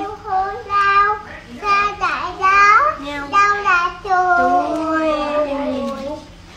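A young child singing a short tune in a high voice, in phrases, ending on a long held note that slides down.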